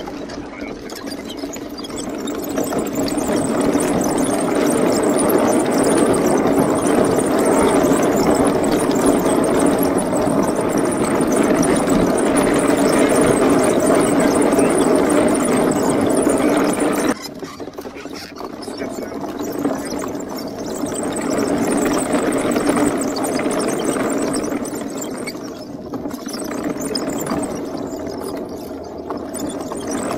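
Homebuilt wooden tank driving on grass, its dual NPC Black Max 3.8 HP electric motors and wooden-slatted tracks making a loud, steady hum. The sound builds over the first few seconds, drops suddenly just past halfway, then goes on quieter and uneven.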